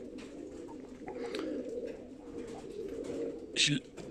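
Many domestic pigeons cooing at once, a steady low chorus of overlapping coos.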